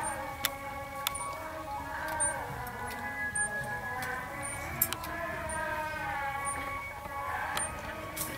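Group of voices singing a devotional chant together, with long held notes.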